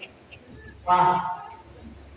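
A man's short vocal sound, a brief word or exclamation, spoken into a handheld microphone about a second in; otherwise low room sound.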